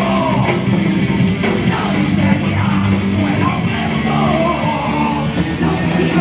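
Punk rock band playing live: distorted electric guitar, bass guitar and drums with a fast, steady beat.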